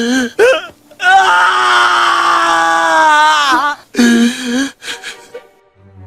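A voice wailing and crying in exaggerated cartoon grief: a few short cries, then one long held wail that drops in pitch as it ends, then more short sobbing cries.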